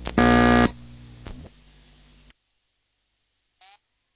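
Mains hum on an archival film soundtrack. About a quarter second in comes a loud half-second buzz tone, followed by a short falling glide. The hum cuts off abruptly about two seconds in, leaving near silence broken by a brief faint chirp near the end.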